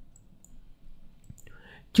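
A few faint computer mouse clicks as a chart is dragged on screen, with a soft intake of breath near the end.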